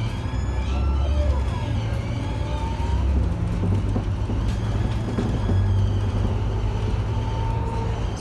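Interior of a city bus driving along: a steady low engine and drivetrain drone with road rumble, its pitch stepping up about three seconds in, with a faint whine gliding above it.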